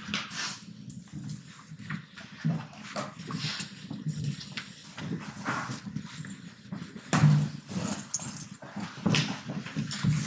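A class of students getting up from lecture-hall seats and moving to the front of the room: scattered knocks and clatter from seats and desks, shuffling footsteps and brief bits of low chatter, with a louder voice or knock about seven seconds in.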